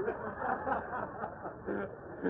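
Muffled chuckling and snickering, thin and dull like an old disc recording.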